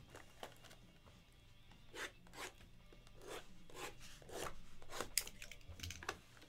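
Faint scraping and rubbing of cardboard card boxes as they are slid and restacked on a table by hand, in a series of short strokes, with a sharper knock about five seconds in.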